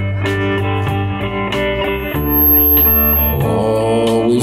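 Live country-blues band playing an instrumental passage with no singing: an electric guitar plays over acoustic guitar and drums, with a steady beat.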